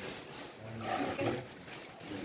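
Indistinct, muffled talk from a small group of people, loudest about halfway through, over a background hiss.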